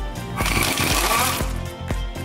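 Background music with a steady beat, and a power tool, such as a cordless impact driver on a Torx bit, running for about a second near the middle as a loud, fast mechanical rattle.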